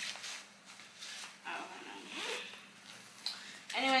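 Zipper on a baby bag's pocket being pulled, with rustling of the bag and its contents as the pocket is searched: a few short scraping strokes.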